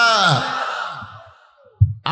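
A man's voice drawing out the end of a spoken phrase, its pitch falling as it fades away, followed by a brief low thump into the microphone near the end.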